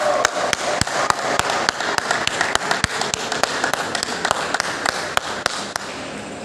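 Table tennis balls clicking off tables and paddles: a quick, irregular run of sharp ticks, about four a second.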